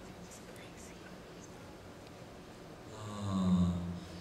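Low hall background, then about three seconds in a man's low, drawn-out hum into a handheld microphone, a thinking sound before he starts to answer.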